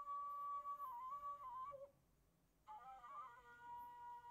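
Faint background music: a slow melody of held notes in two phrases, broken by about a second of silence in the middle.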